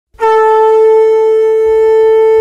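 Conch shell (shankh) blown in one long, steady note that starts just after the beginning and holds without wavering.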